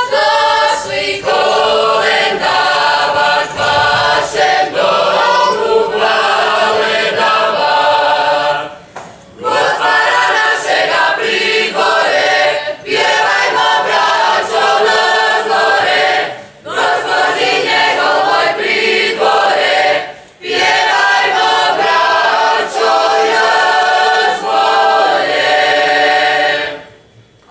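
Mixed choir of men's and women's voices singing a Dubrovnik Christmas carol (kolendavanje), in phrases of about four seconds with short breaks for breath between them.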